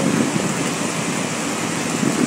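Waterfall in spate, swollen after heavy rain: a heavy torrent pouring down a cliff, heard as a steady, even rushing noise of falling water.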